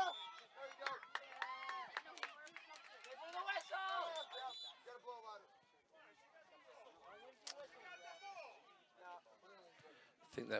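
High-pitched girls' voices shouting and calling out across the soccer field, loudest in the first half, with a few short sharp knocks.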